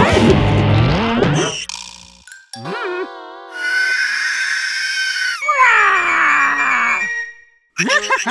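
Cartoon creature and character vocal effects: a loud screeching cry, a warbling call, and a long falling wail, over cartoon music.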